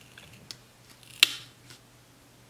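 Small clicks from metal tweezers handling a sticker on a planner page: one sharp click a little past a second in, with fainter ticks before and after it.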